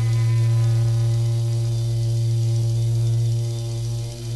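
A live progressive rock band holding one long, steady low chord, recorded straight from the mixing desk: a loud low note with steady overtones above it, unchanging until it eases near the end.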